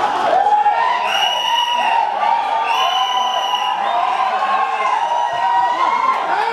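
Football stadium crowd shouting and cheering, with many voices overlapping. Two long, steady whistle blasts sound over it, about a second each, one around a second in and the other near the middle.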